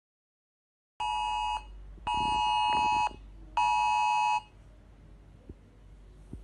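Smartphone emergency alert tone: three loud, steady electronic beeps, the middle one longest, signalling an incoming government emergency alert.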